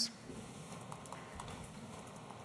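Quiet lecture-room tone with a few faint, light ticks and taps in the first half.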